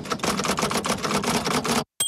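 Typewriter keys clacking rapidly, a dozen or so strokes a second, typing out on-screen text; the clacking cuts off suddenly near the end.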